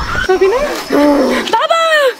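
A woman's high-pitched wailing cries, three short ones in a row, each rising and falling in pitch.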